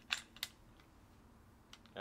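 Sharp clicks from a semi-automatic pistol being handled and checked clear: two clicks in the first half second and two more near the end.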